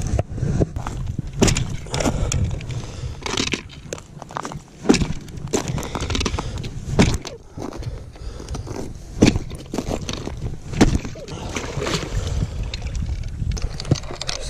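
A boot kicking a hole through the ice at an ice-fishing hole: a run of sharp, irregularly spaced thuds and cracks.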